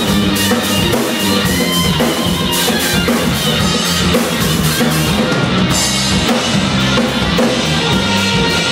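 A small rock band playing live, with an electric guitar and a drum kit whose cymbals keep a steady beat.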